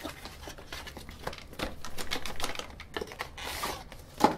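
Cardboard packaging being opened: the flap of a small retail box is lifted and an inner cardboard box is slid out, making a run of light clicks, crinkles and scrapes. A longer sliding scrape comes near the end.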